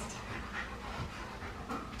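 Soft panting breaths, faint and steady, with no speech.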